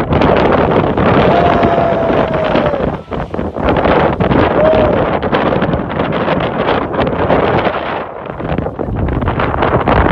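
A geyser erupting in a burst of steam from its pool, mostly buried under heavy wind buffeting the phone's microphone. A voice calls out with a long falling cry about a second in and a shorter one near five seconds.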